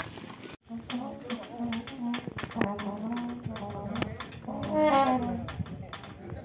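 Brass band instruments sounding scattered short notes, then a louder held chord about five seconds in, over people's voices. A brief break in the sound comes about half a second in.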